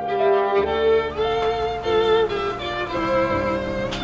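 Violin music: a bowed melody of held notes with vibrato, changing note about every half second.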